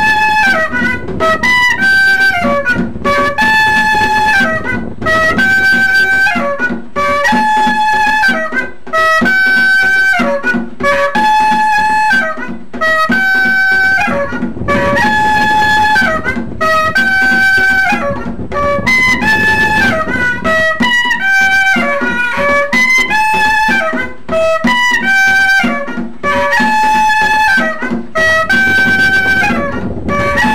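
A caña de millo, the Colombian cane transverse clarinet, is played solo. It plays a bright, buzzy cumbia melody as a repeating figure in short phrases of about two seconds, each split by a brief gap.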